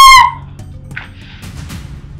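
A woman's high-pitched scream that breaks off about a quarter of a second in, followed by faint background music.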